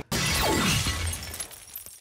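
Glass-shattering sound effect: a sudden loud smash with a falling sweep in pitch, dying away over about a second and a half into scattered tinkles of fragments.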